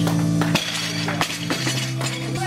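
A loaded barbell with bumper plates dropped from overhead onto a lifting platform: one hard impact about half a second in, then two lighter clanks as it bounces and settles, over background music.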